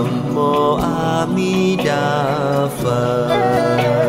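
Buddhist devotional chant sung as music: a voice holds long, wavering notes over steady instrumental accompaniment with plucked strings.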